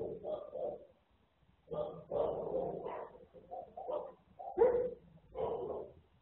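An animal calling repeatedly in uneven bursts, the loudest near the end.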